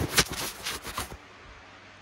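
Phone camera lens being wiped, with the rubbing and scuffing picked up right at the microphone as close handling noise. It lasts about a second, then drops to a low background hush.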